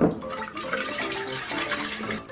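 Water, oil and soap sloshing inside a glass Erlenmeyer flask as it is shaken, the soap mixing the oil into the water.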